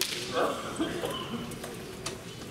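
Kendo fencers in a bout: a sharp wooden crack at the very start, then several short shouts of kiai.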